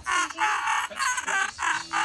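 A person's high-pitched squealing voice in short repeated bursts, four or five in quick succession.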